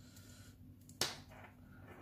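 A single sharp plastic click about a second in, from the small plastic LED head torch being handled and adjusted in the hands, with faint handling noise around it.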